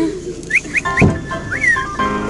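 A dog whining: three short high rising whines in quick succession, a thump about a second in, then a longer whine that rises and falls.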